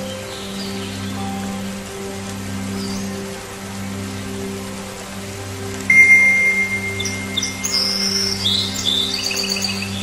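Soft ambient music with steady sustained low notes, with songbirds over it: about six seconds in a long steady whistle note starts suddenly, followed by a run of quick high chirps.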